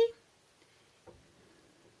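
Near silence after the tail of a spoken word, with a faint soft rustle about a second in, such as a furry hand puppet being moved against clothing.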